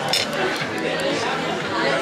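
Diners' chatter: several voices talking at once in a restaurant, with a few light clicks of tableware.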